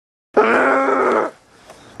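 A person's drawn-out vocal groan, about a second long, starting a moment in after dead silence.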